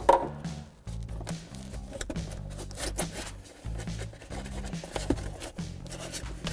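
Background music with steady low notes, over scattered knocks, clicks and scrapes as the lug wrench and scissor jack are handled in the spare tire's foam tool tray.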